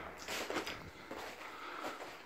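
Faint footsteps and shuffling on a debris-strewn floor, with a few soft scuffs and knocks.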